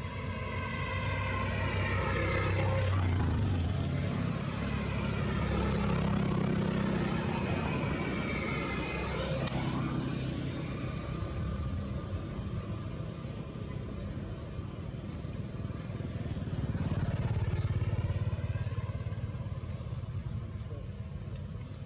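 Engines of passing motor vehicles: a low rumble that swells and fades several times, loudest about 3 seconds in, around 6 seconds and near the end, with a gliding engine pitch as they go by.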